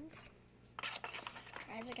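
A girl's voice starts speaking near the end. Just before it there is about a second of short scratchy hiss.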